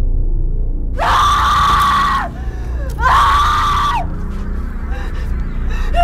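Two long, high-pitched human screams, the first about a second in and the second about three seconds in, each lasting about a second and dropping in pitch as it ends, over a low, dark rumbling drone. Shorter cries follow near the end.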